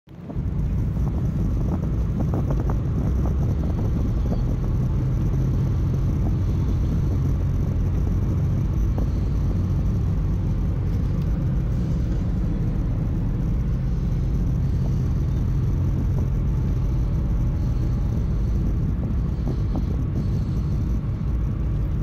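Steady low road and engine rumble inside a moving vehicle's cabin, fading in over the first half second and then holding even.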